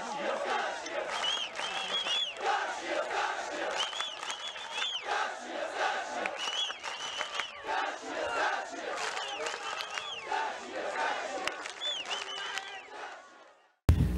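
Crowd of football supporters chanting and shouting together, many voices at once, fading out near the end.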